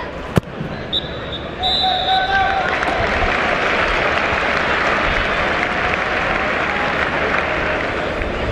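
A football kicked hard, one sharp thud just after the start, over the steady noise of a stadium crowd. About a second in, a high whistle sounds twice, then the crowd noise swells and holds at the half-time whistle.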